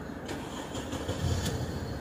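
Car engine running at low speed, a steady low rumble heard from inside the cabin.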